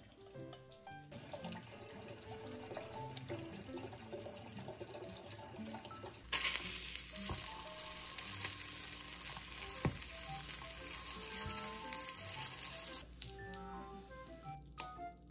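Buckwheat crepe rolls sizzling in oil in a square frying pan. The sizzle comes in suddenly about six seconds in, like the sound of rain, and stops shortly before the end, over soft background music.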